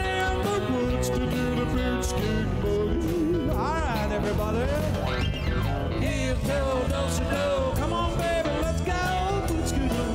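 Live rock band playing an instrumental break of a country-rock song: an electric guitar lead with bending notes over drums, bass and keyboard.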